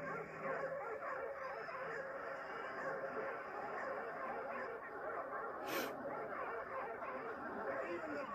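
A sound-effects record of a pack of dogs barking and yelping together, with many overlapping barks and yips. It is played by mistake where crowd cheering was wanted. There is a short sharp crackle about two-thirds of the way through.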